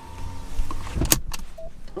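Car seatbelt being buckled: a sharp latch click about a second in, with a few smaller clicks after it, over a low steady hum.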